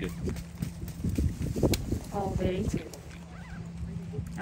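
Scattered light clapping from golf spectators just after a tee shot, a ragged run of claps in the first two seconds, then a brief voice, over a steady low hum.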